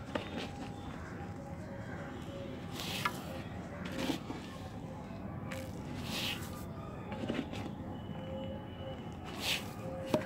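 Potting mix poured into a 16-inch terracotta pot in three short spills, each under a second, with a few light knocks between pours.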